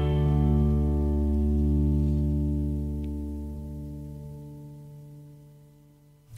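The last chord of a folk song recording rings on and slowly fades out to near silence.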